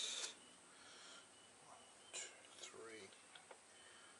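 A man's voice muttering faintly under his breath, with a short hiss at the start and two small clicks past the middle.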